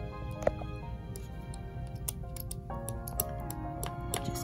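Quiet background music, with a run of small sharp clicks and ticks as a small metal tool picks and scrapes at paint on mirror glass to lift the excess off. The sharpest click comes about half a second in.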